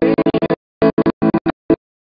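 Keyboard chords playing, heard in rapid stuttering fragments that break up the sound, cutting off abruptly shortly before the end.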